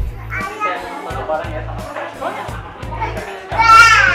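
Young children playing and calling out over background music with a steady beat. Near the end a child gives a loud, high-pitched shout that falls in pitch.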